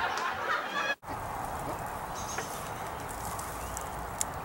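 A young man snickers and chuckles for about a second, then the sound cuts off suddenly and gives way to a steady hiss of outdoor background noise.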